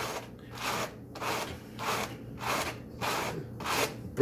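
Raw sheep's wool being hand-carded between two wooden hand carders: repeated scratchy brushing strokes of the carders' teeth through the fleece, about two strokes a second. This is the carding stage that pulls the fibres into one direction and shakes out the trash before spinning.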